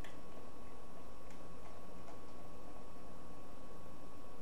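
Beer being poured from a bottle into a glass: a few faint scattered ticks and clinks over a steady low hiss, from a highly carbonated bottle-conditioned stout.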